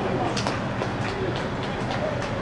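Open-air ambience at a soccer match: a steady low rumble with about eight sharp, irregular knocks and faint voices from the pitch.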